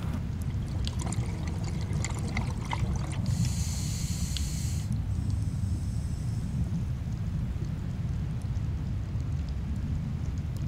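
Underwater ambience picked up by a diving camera: a steady low rumble of moving water with scattered faint clicks over the first three seconds. A high hiss comes in about three seconds in and stops sharply near five seconds, followed by a fainter hiss that lingers.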